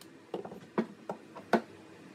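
A few short knocks and clacks as a cordless drill and a pocket-hole jig are handled and the drill is set down on a wooden workbench after drilling. The loudest knock comes about a second and a half in.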